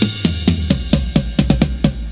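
Opening of a roots reggae dub version: a quick run of drum-kit strokes, about seven a second, over a deep bass line.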